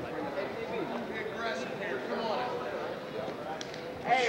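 Background chatter of many voices talking at once, with no single voice standing out.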